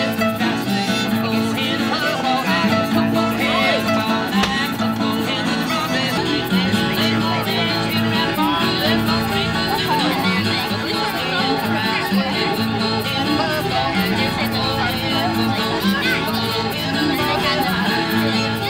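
Acoustic guitar and fiddle playing a tune together live, without a break.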